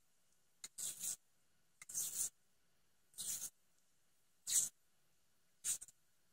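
Grip tape being pulled off its roll and wound around a PVC pipe handle: about five short, scratchy rasps, roughly one a second, each a stretch of tape peeling free.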